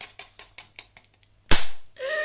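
A quick, irregular run of light clicks that fades out within about a second, then one loud thump with a deep low end about one and a half seconds in.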